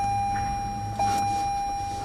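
A steady electronic beep tone holding one pitch, with a brief flicker about a second in, over a low steady hum inside the car.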